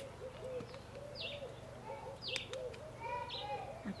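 Birds calling: a continuous run of low, arching notes repeated several times a second, with higher, downward-sliding chirps every second or so.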